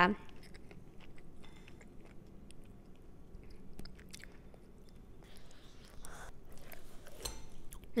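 Quiet chewing of a bite of pepperoni pizza, with faint scattered mouth clicks.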